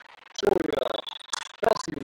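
Short shouted calls from voices across a volleyball court during a rally, one about half a second in and a cluster near the end, with a few sharp knocks and a brief high squeak between them.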